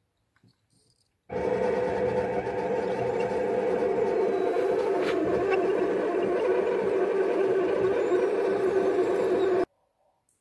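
Electric fuel pump of a Mercedes KE-Jetronic injection system running with the engine off, bridged to pressurize the fuel distributor for a leak check: a steady hum that starts about a second in and cuts off abruptly shortly before the end.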